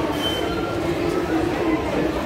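Busy crowd ambience: many passers-by talking at once over a steady background rumble, with a brief high chirp a moment in.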